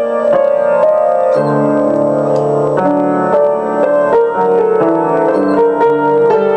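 Upright piano played solo: a steady run of notes over chords, with deeper bass notes joining about a second and a half in.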